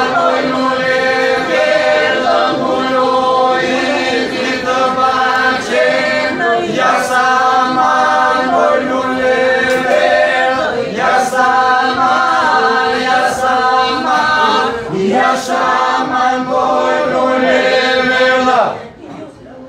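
Albanian polyphonic folk singing, unaccompanied: a group of voices holds one steady drone (the iso) while lead voices sing the melody above it in long phrases. The song is loud, with short breaks between phrases twice near the end.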